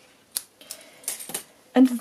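Scissors cutting baker's twine: one sharp metallic click, followed by a few lighter clicks and taps.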